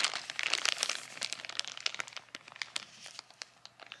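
A clear plastic bag of toy bricks and printed tiles being handled, its thin plastic crinkling in quick irregular crackles that thin out over the last couple of seconds.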